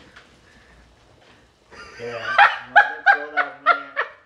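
A person laughing nervously in short, rapid bursts, about four a second, starting about halfway through with a short 'yeah'. The first half is quiet.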